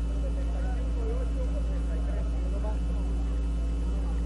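A steady low hum runs under faint, indistinct voices of a congregation murmuring in the background.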